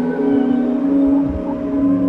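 Ambient spa music: layered, sustained tones held at steady pitches, with slight pitch bends and soft low pulses beneath.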